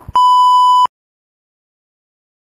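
A single steady electronic beep tone, loud and unwavering in pitch, lasting under a second.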